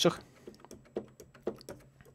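Keys of a compact MIDI keyboard clicking as they are pressed: a few light, separate taps with no instrument sound coming through.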